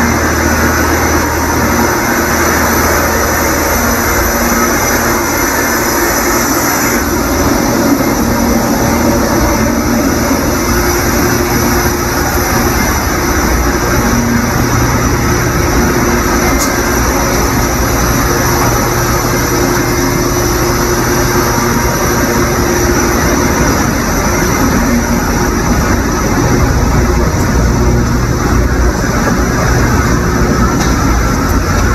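Loud, steady machine-like roar with a low hum underneath, from the soundtrack of footage shot inside a warehouse packed with trucks, played back over an auditorium's speakers. The tone of the hum shifts a little about a quarter of the way in and again near the end.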